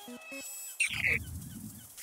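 A short, falling, bird-like chirp about a second in, over a low rumble: a cartoon sound effect.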